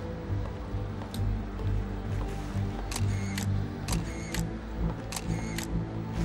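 SLR camera shutter firing repeatedly: sharp clicks in pairs about half a second apart, starting about three seconds in, after a single faint click a second in. Background music plays throughout.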